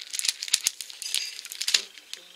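Plastic-and-card packets of stick-on nail-art pearls being handled and shuffled: crinkling and clicking, with two sharp clicks about half a second in.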